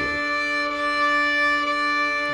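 Fiddle bowing one long, steady D note over a continuous D drone track, played as an in-tune check against the drone.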